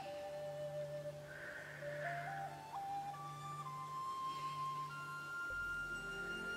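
Calm background music: a slow single melody line of long held notes stepping up and down in pitch, over a low steady drone.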